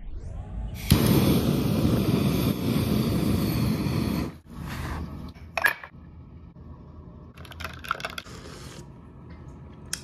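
A small butane kitchen torch lit with a sharp click and then running with a loud, steady hiss for about three seconds as it toasts marshmallows; it cuts off abruptly. Softer clicks and the pour of milk into a glass follow.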